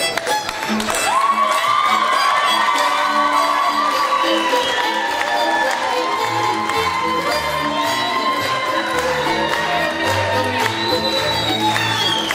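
Folk music with a fiddle holding long notes and a bass line coming in about halfway, over a crowd cheering and clapping.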